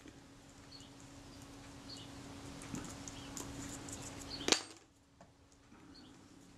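Quiet small-parts handling: fine tweezers and a cotton bud working scraps of leatherette on a sheet of paper, with light scratchy ticks and one sharp click about four and a half seconds in, over a steady low hum.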